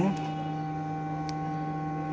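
Steady electrical hum made of several fixed tones, with one faint click about a second in.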